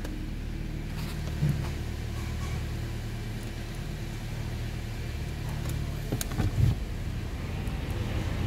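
A 2012 Toyota Corolla's 1.8-litre petrol four-cylinder engine idling steadily, heard from inside the cabin, with a few light clicks and a brief knock about two-thirds of the way through.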